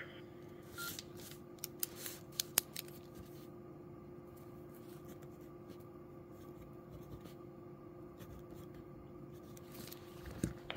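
A few faint clicks and one short beep in the first three seconds, as from a handheld ham radio being handled between transmissions, over a faint steady hum.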